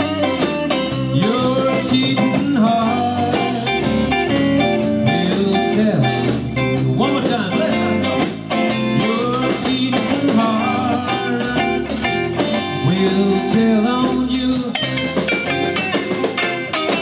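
Live band playing a slow country song without words: an electric guitar lead with sliding, bent notes over bass guitar and drum kit.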